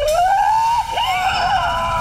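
A long, drawn-out voice-like wail that rises in pitch at the start, breaks briefly about a second in, then holds steady at a high pitch.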